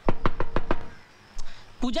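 A fist knocking on a wooden door: a quick run of about five knocks in the first second.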